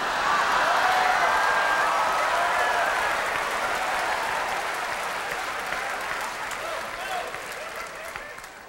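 Large theatre audience laughing and applauding, loudest about a second in and slowly dying away.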